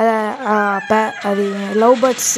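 A person speaking in drawn-out syllables, in a language the recogniser could not follow.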